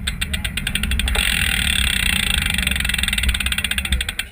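BMX bike rolling on asphalt: fast, even clicking from the rear hub's freewheel as the rider coasts, with tyre and wind noise swelling about a second in and staying loud.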